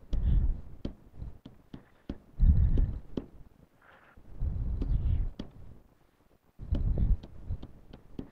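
A run of short, sharp clicks as buttons are pressed to key in a sum on a calculator, over low, muffled voices in the room that come and go several times.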